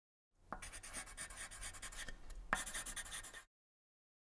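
Faint marker writing: a felt-tip marker scratching out handwritten words in quick short strokes, with a sharper tap about half a second in and another about two and a half seconds in. It stops shortly before the end.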